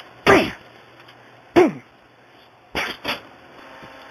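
A man's short wordless vocal outbursts: four brief shouts, each falling in pitch, the last two close together.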